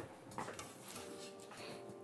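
Faint handling sounds from a tempered glass side panel being carried and brought down onto an open-frame PC case, with one light click about half a second in.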